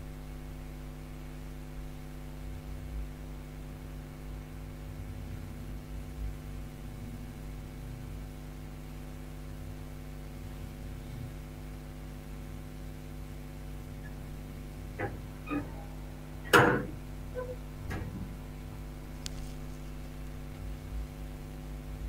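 Steady electrical hum with a stack of evenly spaced overtones, and a handful of short sharp clicks in the last third, one much louder than the rest.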